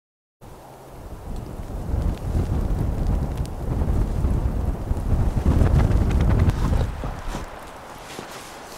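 Wind rumbling and buffeting on the microphone in gusts. It builds over a few seconds and eases off near the end.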